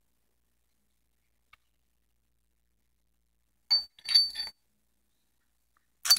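Quiet, then about two thirds of the way in two short, bright clinking rattles of a scoopful of nail-art glitter mix with tiny caviar beads shifting and spilling.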